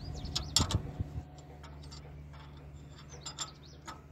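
Metal hand tools clicking and clinking on bolts as a starter motor is fitted to an excavator engine, a cluster of knocks about half a second in and a few more clicks near the end.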